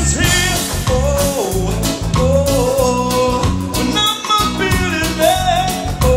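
A live reggae band playing: drums, electric guitar and keyboards keeping a steady beat, with a melody line over the top.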